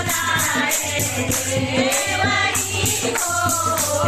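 Several voices singing a devotional folk song (batuk geet) for a sacred-thread ceremony, over a tambourine-like jingling percussion that beats steadily about four times a second.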